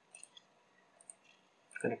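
Faint computer mouse button clicks: a quick cluster near the start and another couple about a second in.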